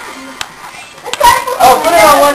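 Two sharp clicks, about half a second and a second in, then young voices shouting and laughing excitedly in a small room.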